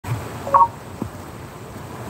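A short electronic beep about half a second in, followed by a soft knock about a second in.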